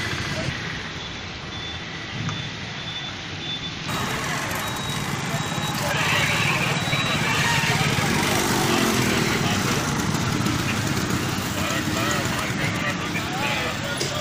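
Motorcycle engines idling amid street noise and people's voices, with a sudden change in the sound about four seconds in.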